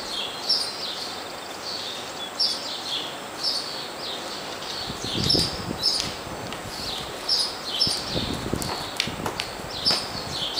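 Small birds chirping repeatedly, short high chirps every half second to a second, with soft low thuds of a horse trotting on the arena footing in between.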